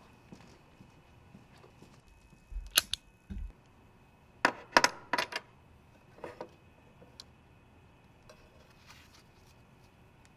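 A few sharp clicks and knocks over quiet room tone: a dull thump with a click a little before three seconds in, another thump soon after, then a quick cluster of sharp clicks around five seconds in.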